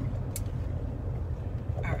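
Steady low rumble of road and engine noise inside a moving car's cabin, with one short click about a third of a second in.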